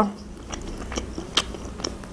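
A person chewing a mouthful of salami close to the microphone, with about four soft, sticky mouth clicks spaced roughly half a second apart.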